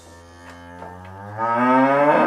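One long cow-like moo that starts faint, rises slowly in pitch and swells louder about a second and a half in.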